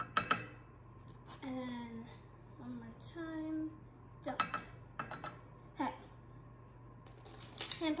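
A plastic measuring spoon knocking against a saucepan as spoonfuls of cornstarch are tipped in, with a couple of sharp taps just after the start and again about four seconds in. A child's voice murmurs between the taps.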